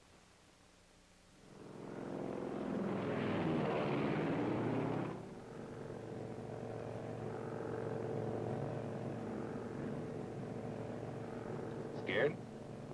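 Small propeller plane's piston engine: the sound swells in about a second and a half in, is loud for a few seconds with pitches sliding against each other, then drops suddenly to a steady engine drone.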